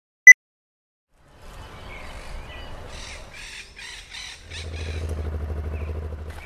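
A short countdown beep at the very start, then outdoor ambience in which a crow caws about six times in quick succession. About four and a half seconds in, a motorcycle engine comes in and runs at a steady low idle.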